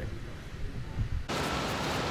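Quiet, dull outdoor background with one soft low thump about a second in, then a sudden switch to a steady hiss of wind and gentle surf at the water's edge.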